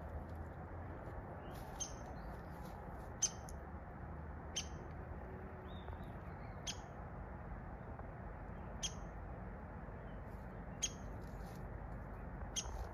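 A bird's short, sharp high call, repeated about every two seconds, over a faint low hum.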